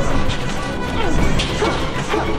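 Fight-scene soundtrack: background music under sound-effect hits and blows, with short grunts from the fighters.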